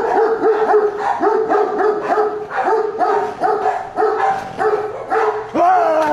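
A dog barking rapidly over and over, about three barks a second, ending in a longer, higher drawn-out call near the end.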